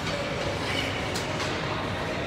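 Ice rink ambience during an ice hockey game: a steady wash of noise from skates on the ice and the arena, with two sharp clacks a little past one second in.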